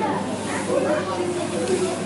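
Indistinct chatter of several people talking, over a steady hiss.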